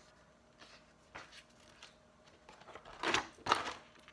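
Paper page of a spiral-bound picture book being turned: a few small clicks, then a short rustle about three seconds in.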